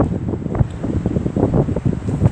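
Wind buffeting the microphone: a loud, uneven rumble that comes and goes in quick gusts.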